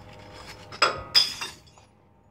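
A green glass bottle dropped into a bottle bank, falling onto the glass already inside: two loud crashes of glass on glass about a third of a second apart, then a ringing clatter that dies away.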